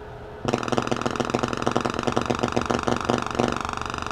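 Loudspeaker playing a sine-wave sweep from an LM1875 chip amplifier, starting about half a second in. It is driven into clipping, so the tone is harsh and buzzy with a rapid pulsing. The current draw pulls down the supply rail, which is filtered by only 100 µF capacitors.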